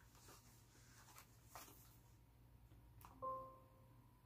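Near silence with a few faint taps and rustles from handling a laptop. Near the end a click is followed by a short ringing tone that fades, over a low steady hum.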